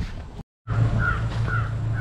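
Three short bird calls, about half a second apart, over a steady low hum, after a brief total dropout of the sound near the start.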